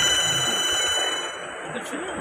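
A steady high ringing tone, several pitches sounding together, that fades out about a second and a half in, over faint background voices.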